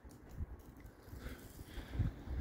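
Faint low rumble of wind on the microphone, with a few soft handling bumps and no clear event.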